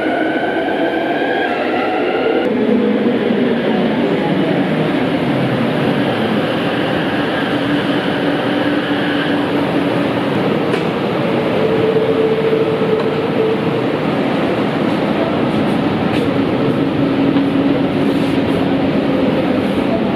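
Driverless light rail train running: a loud steady rumble and rush of wheels and car, with an electric motor whine that rises in pitch during the first couple of seconds as the train moves off, then settles into steady hums.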